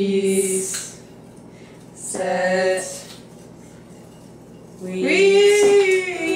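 Girls' voices singing in short held notes: three phrases, at the start, about two seconds in, and a longer one near the end that slides down in pitch.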